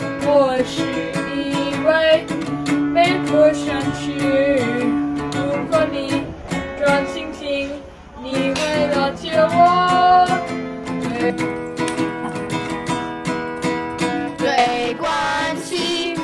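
A child singing over a strummed acoustic guitar, with a short break between phrases about halfway through.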